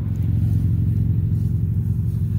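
Low, steady hum of a running vehicle engine.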